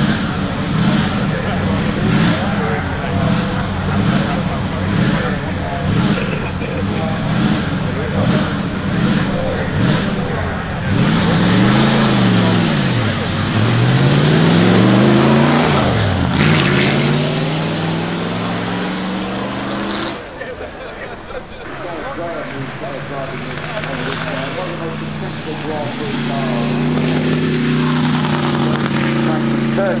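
Supercharged 3.2-litre straight-eight engine of a 1934 Alfa Romeo P3 Tipo B, revving in uneven pulses for the first ten seconds or so, then accelerating hard: the revs climb and drop twice as it changes up, then rise in one long pull before the sound drops away and runs on more quietly.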